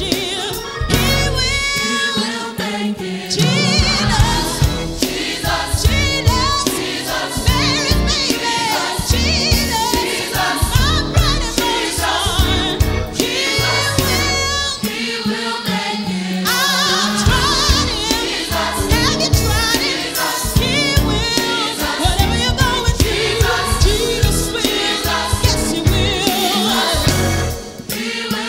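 Gospel choir singing with instrumental backing and a steady beat.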